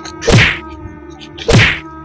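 Two heavy whacks about a second and a quarter apart, blows struck at a soft dark bundle, over background music with steady held tones.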